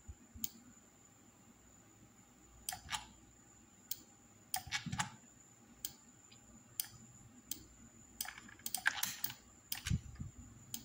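Computer mouse and keyboard clicks, a dozen or so short, irregularly spaced ones, with a quick cluster about nine seconds in, as pen-tool points are placed in Photoshop.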